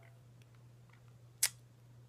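A faint steady low hum, with one short sharp click about one and a half seconds in.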